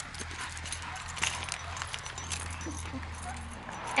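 Footsteps scuffing and crunching on a gritty asphalt path, with many small irregular clicks.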